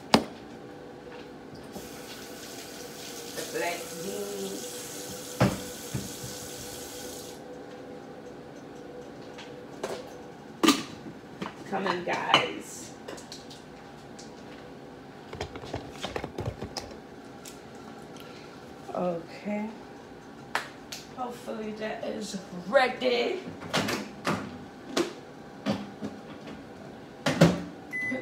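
A kitchen tap runs for about five seconds near the start. Scattered knocks and clatter of dishes and containers follow, over a faint steady hum.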